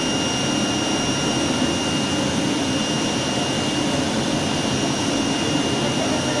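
Automatic flatbed CNC cutting table running as its cutting head travels over a printed sheet: a steady rushing machine noise with a constant high whine.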